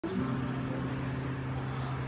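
A low acoustic guitar string ringing on one steady note while it is tuned at the headstock.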